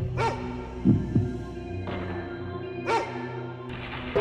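Suspense film score: a sustained low drone with a heartbeat-like double thump about a second in. Two short, sharp, bark-like calls come about a quarter second in and again near three seconds.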